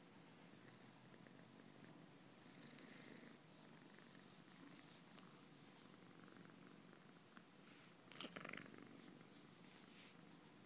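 Domestic cat purring faintly and steadily while its fur is stroked. A brief rustle about eight seconds in is the loudest moment.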